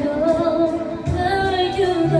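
A woman singing into a microphone, holding long, slowly gliding notes over instrumental accompaniment, with low notes coming in about a second in.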